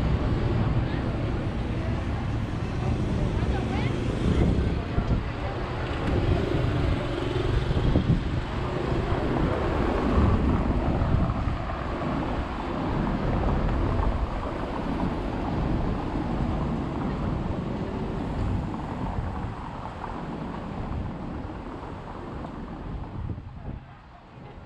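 City street ambience: passing traffic, scattered voices of passers-by, and wind buffeting the microphone with a heavy low rumble. The sound fades out near the end.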